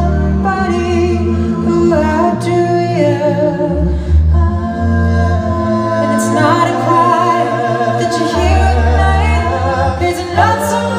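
Live a cappella vocal performance: a male lead singer holds long, wavering notes over backing vocal harmonies and a deep vocal bass line that drops out and comes back.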